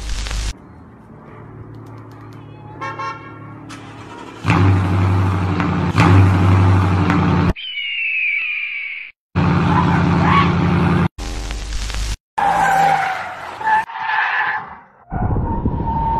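A string of short car clips cut abruptly one after another: a car engine running loud, tyres skidding and a car horn sounding.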